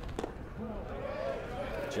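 A baseball popping into the catcher's mitt about a fifth of a second in, as a pitch is caught for a ball just off the plate. Faint voices follow.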